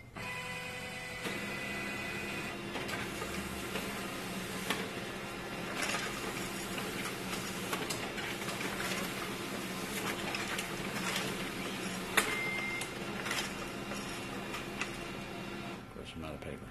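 HP LaserJet M2727nf laser multifunction printer running a five-copy job: a steady whir of motors and rollers with occasional clicks as sheets feed through. It stops shortly before the end.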